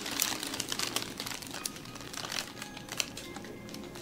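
Crinkling and rubbing of massage hands working over skin and the table sheet, densest in the first second and a half, over soft background music.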